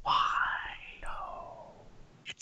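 A person's breathy, wordless voice: two drawn-out sounds about a second apart, each falling in pitch.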